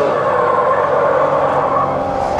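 Drift cars' engines held at steady high revs while sliding in a steady circle, the pitch staying nearly level.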